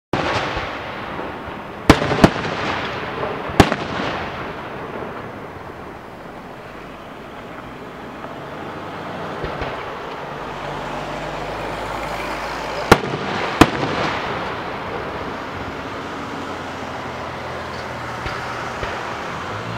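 Aerial fireworks bursting: sharp bangs twice in quick succession about two seconds in, again near four seconds, and a close pair near thirteen seconds, with a continuous noisy rush between them.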